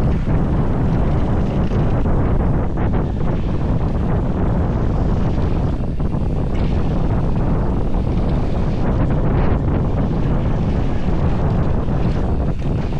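Steady wind rush on the microphone from a mountain bike descending at speed, over knobby tyres rolling on dirt and rock, with a few faint knocks from the bike on bumps.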